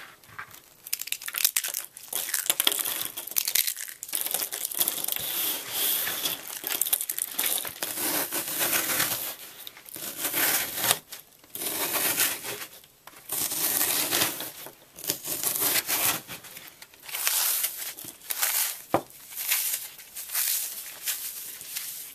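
Hands breaking and crumbling a block of dry green floral foam with a chalky crust, among brittle soap curls, in repeated crunching bursts of a second or a few seconds separated by short pauses. One sharp click comes a few seconds before the end.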